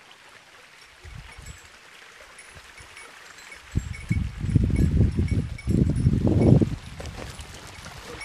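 Low rumbling noise on the microphone that comes in loud about four seconds in and lasts about three seconds, over faint high tinkling throughout.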